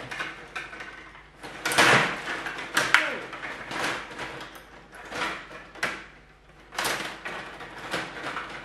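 Stiga table hockey game in play: metal control rods sliding and rattling in the table, with plastic players clacking and the puck knocking against sticks and boards. The sounds come in uneven bursts, the loudest about two seconds in, at three seconds and near the end.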